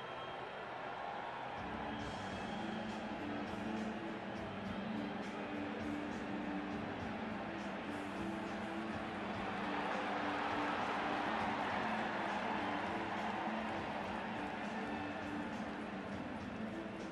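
Stadium crowd noise with music playing over it, a repeating low two-note figure. The crowd noise swells about ten seconds in.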